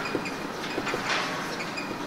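Room background noise during a pause in a lecture recording: a steady hiss with a faint low hum, a few faint clicks and several short, faint high-pitched peeps.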